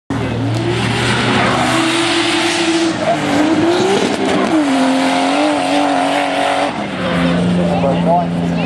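Drift car's engine revving up and down as it slides sideways through a corner, with tyres squealing and scrubbing under a loud hiss of tyre noise. The engine note settles lower and steadier near the end.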